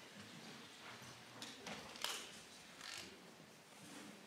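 Faint background noise of a standing crowd in a hall, with a few scattered knocks and clicks such as footsteps, the sharpest about halfway through.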